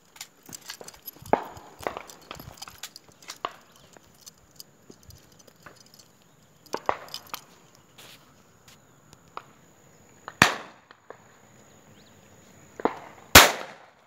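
Two loud shotgun shots about three seconds apart near the end, each with a short echoing tail, with scattered fainter pops and clicks earlier.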